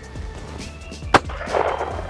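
A single shotgun shot about a second in, fired gun-down at a looping clay target, with a short trail of echo after it.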